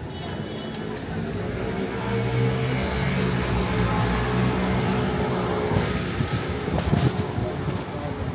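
A car passing close by on a wet street: its engine hum and tyre hiss swell over a couple of seconds, peak about four seconds in, then fade.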